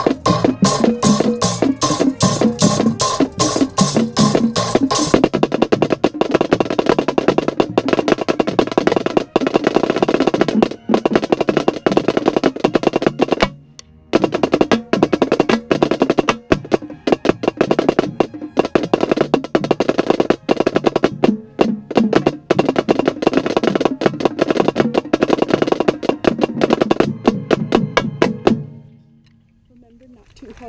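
Marching snare drum with an Evans head played right at the microphone: fast stick patterns and rolls, with the marching band playing behind. The drumming breaks off briefly about halfway through and stops near the end.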